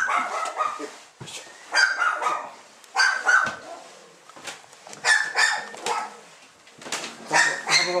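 An animal's short, sharp, high-pitched calls, coming every second or two, several of them in quick pairs.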